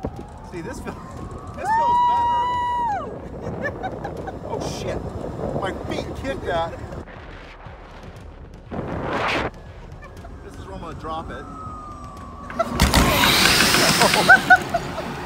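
Zipline trolley running along its steel cable with a whine that rises in pitch as it picks up speed and later falls as it slows. A long, held yell comes about two seconds in, with scattered voices. A loud rush of noise starts near the end as the rider comes in to the bottom.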